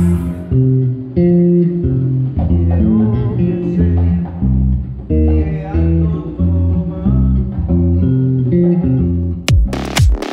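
Electric bass guitar playing a line of low notes, one after another. Near the end, sharp electronic hits cut in.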